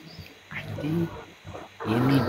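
A man's faint, short low voice sound about half a second in, heard through a video call, then louder laughter beginning near the end.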